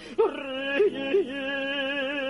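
A tenor cantor singing hazzanut, Jewish cantorial chant. The voice breaks briefly, runs through quick ornamental turns in the cantorial coloratura manner, then settles into a long held note.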